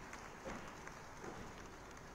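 Faint ambience of a large ceremony hall, with scattered soft clicks.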